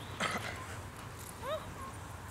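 German Shepherd whining: a short, high whine that rises and falls about one and a half seconds in. A brief, sharp, louder noise comes near the start.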